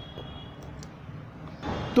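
Steady, low-level city traffic noise heard from a rooftop, a constant hiss and low rumble.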